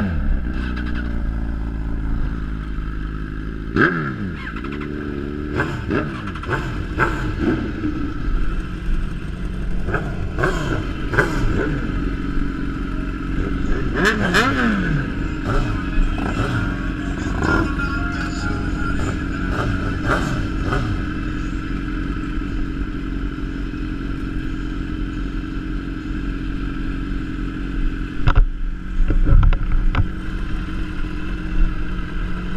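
Sportbike engines idling, with the throttle blipped again and again so the revs rise and fall repeatedly in the first two-thirds, then a steadier idle. A couple of sharp knocks come near the end.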